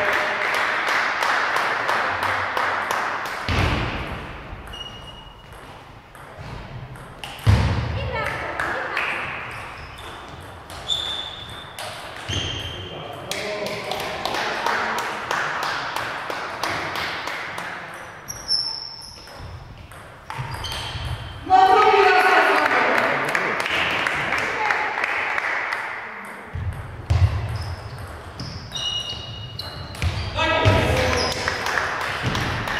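Table tennis rallies: a celluloid-type ball clicking off rubber bats and the table in quick back-and-forth exchanges, with pauses between points and voices talking in the hall.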